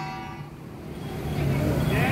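A lull between strikes of hand-held drums and a brass gong: the gong's ringing dies away in the first half second, leaving street noise of voices and traffic that grows louder towards the end.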